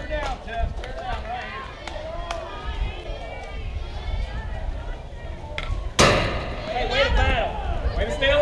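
A fastpitch softball bat striking a pitched softball: one sharp crack about six seconds in. Players and spectators call out from the field before it and shout louder right after it.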